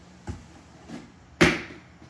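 Hands handling packed printer parts in a cardboard shipping box: a couple of soft knocks, then one sharper knock about one and a half seconds in.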